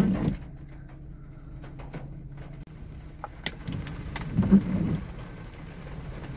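Rain falling on a car, heard from inside the cabin: a steady low rumble with scattered ticks of drops. There are brief louder low rumbles at the start and about four and a half seconds in.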